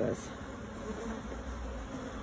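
A honeybee colony in an opened hive, many bees buzzing together in a steady, even hum.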